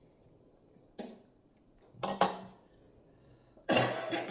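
Tableware clattering: three short knocks and scrapes of a utensil against a bowl, about a second in, at two seconds and near the end, the last the loudest.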